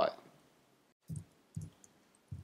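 Two soft, dull clicks about half a second apart, roughly a second in, from someone working a computer at a desk while code is pasted into the editor.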